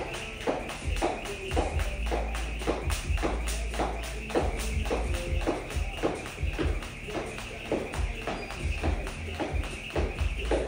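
Jump rope slapping a rubber gym floor mat in a steady rhythm, about two slaps a second, over background music.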